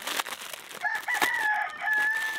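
A rooster crowing once, one long held call starting about a second in, over the crinkle of a plastic packet being handled and opened.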